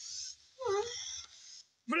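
A short, low vocal moan from a person, followed by a soft breathy sigh that fades away.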